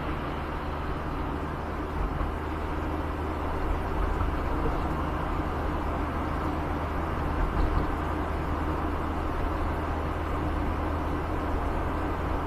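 Car running, heard inside the cabin through a dash cam: a steady low hum of engine and road noise as the car creeps away from a standstill, getting a little louder about four seconds in as it picks up speed.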